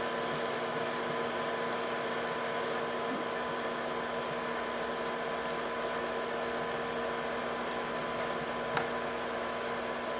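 Home-movie projector running: a steady whirring hum with a faint click a second before the end.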